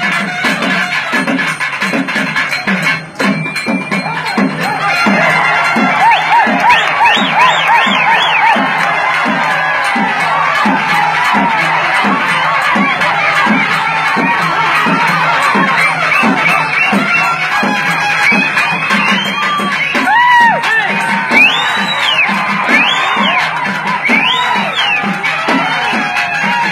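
Karakattam folk band music, led by a double-headed barrel drum beating a steady rhythm of roughly two strokes a second. A crowd cheers and shouts over it. Shrill rising-and-falling notes come through near the end.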